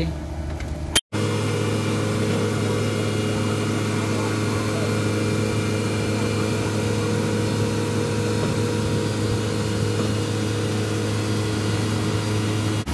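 Diesel engine of a CAT 307-based amphibious excavator idling with a steady, even hum. A click and a brief gap come about a second in.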